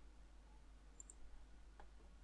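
Near silence with a few faint computer mouse clicks: a quick pair about a second in and one more near the end.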